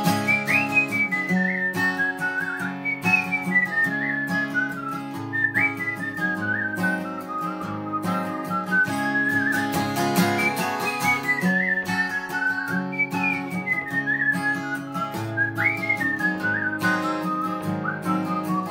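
Acoustic guitar strummed under a whistled melody in an instrumental break. The whistled tune falls in descending phrases that start again roughly every two to three seconds.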